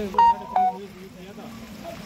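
Two short, sharp tones about a third of a second apart, the second lower in pitch, over a faint background murmur.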